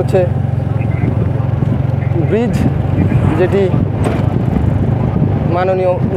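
Steady low drone of a moving vehicle's engine and road noise, heard from on board. Brief bits of a voice come through about halfway in, and speech starts just before the end.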